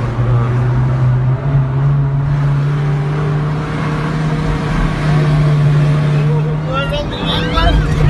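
Engine of an old passenger van labouring uphill under heavy throttle, heard from inside the cabin: a steady, loud drone whose pitch steps up about a second and a half in and then holds.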